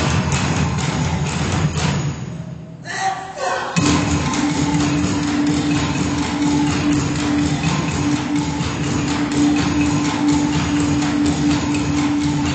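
Taiwanese aboriginal ensemble music: dense, rhythmic thudding percussion. The sound dips briefly about two to three seconds in, and from about four seconds a single steady held note sounds over the continuing thuds.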